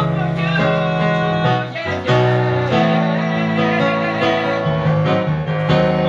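Roland stage keyboard playing the accompaniment to a slow pop song. Its held chords change every second or so.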